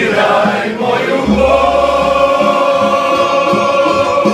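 A mixed group of men's and women's voices singing a Croatian song in harmony to strummed plucked-string instruments. About a second in, the voices settle onto a long held chord while the strumming keeps a steady beat beneath.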